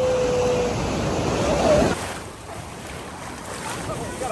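Ocean surf washing around waders in the shallows, with wind rumbling on the phone microphone; a voice holds a long 'ahh' in the first second. About halfway through the rumble drops away to a softer wash of small waves.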